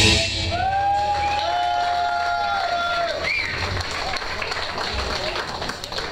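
The end of a live punk band's song: the last crash dies away just after the start. Then come a couple of long held high tones with a slight bend, lasting about two and a half seconds, over light crowd noise and clapping in the hall.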